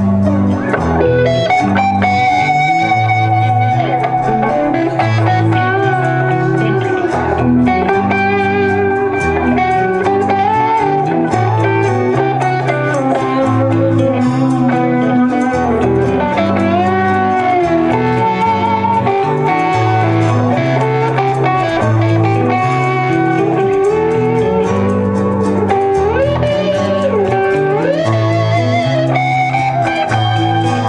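Live rock band in an instrumental passage: a lead electric guitar plays a melody with bent and sliding notes over strummed guitar and bass guitar.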